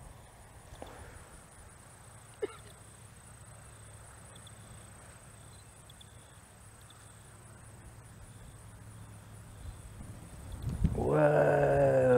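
Quiet outdoor ambience with light wind rumbling on the microphone and a faint, steady high-pitched tone; a single brief sharp sound about two and a half seconds in. Near the end the wind gusts louder on the microphone.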